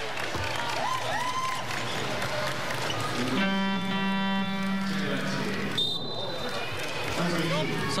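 Arena crowd noise, then about three and a half seconds in a loud, steady buzzer-like horn sounds for about two and a half seconds: the arena horn signalling a substitution.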